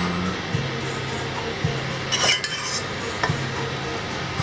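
Utensil scraping and clinking against a stainless steel pot as sauced pasta is served out into ceramic bowls, with one louder scrape a little after two seconds in and a few light clicks.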